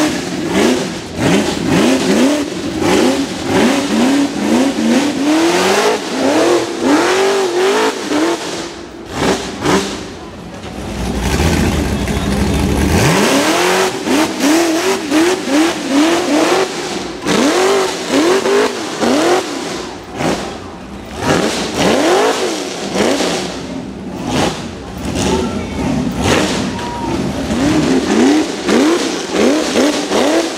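Rock bouncer's engine revved hard again and again as the buggy claws up a rocky hill, its pitch rising and falling about twice a second, with sharp knocks between revs. About a third of the way in the revs give way to a steadier low rumble for a couple of seconds.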